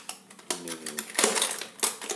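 Metal wrenches and bolts clinking and rattling against each other and the plastic tray as a hand rummages through a toolbox, a quick run of clicks that is loudest in the second half.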